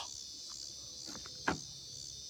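Steady high-pitched buzzing of an evening insect chorus, with a few faint clicks and a single sharp knock about one and a half seconds in.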